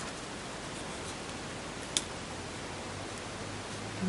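Steady background hiss with no speech, broken by one short click about halfway through.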